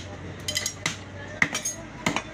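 Heavy butcher's knife chopping beef on a wooden log chopping block: several sharp chops, some with a metallic ring from the blade.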